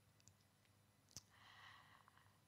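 Near silence with faint room tone, broken by one sharp click about a second in, followed by a soft faint rustle.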